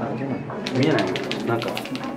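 Marker pen scratching across a large photo print in a quick run of short strokes, starting about half a second in and lasting just over a second, over people talking.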